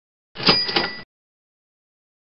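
Short sound effect marking the change to the next exam question: two quick clicks about a third of a second apart with a high ringing tone, cut off abruptly after less than a second.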